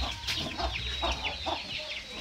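A brood of Gigante Negro chicks peeping, many short falling chirps overlapping, while the mother hen clucks low among them.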